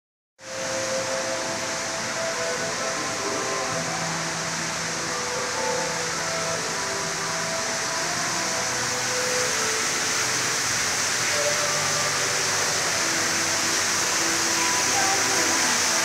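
Steady rushing background noise of an aquarium exhibition hall, the kind made by tank water circulation and ventilation, with faint short sustained tones drifting over it.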